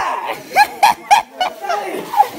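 A person laughing in a run of short, quick bursts.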